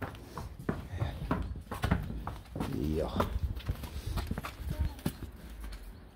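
A horse walking on a hard stable floor, its hooves knocking in an irregular clip-clop.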